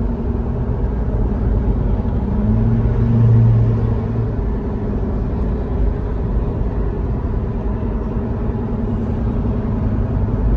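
Steady road and engine noise of a car cruising at freeway speed, heard from inside the cabin, with a low hum that swells louder for a couple of seconds about three seconds in.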